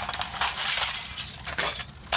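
A thin sheet of ice on a rock is broken up and swept off by a gloved hand: dense crunching and crackling, with small shards clinking. It is loudest about half a second in and dies down near the end.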